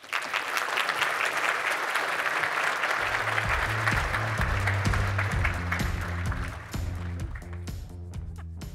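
Audience applauding, with music and a bass line coming in about three seconds in; the clapping fades near the end while the music carries on.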